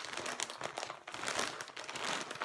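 Crinkling and rustling as a braid of hand-dyed spinning fiber is handled and twisted up in the hands: a dense run of small irregular crackles.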